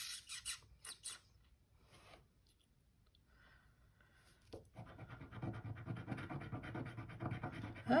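A few light clicks near the start, then from about halfway in, steady rapid scratching as a small pointed tool scrapes the scratch-off coating from a circle on a cardstock scratcher card.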